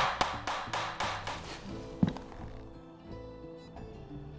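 Claw hammer driving a nail through a scrap-wood cleat into 2x6 boards, with a quick run of blows, about three or four a second, fading over the first second and a half, then one last sharp blow about two seconds in.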